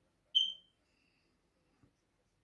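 A single short, high-pitched beep that fades quickly, about a third of a second in, against near silence.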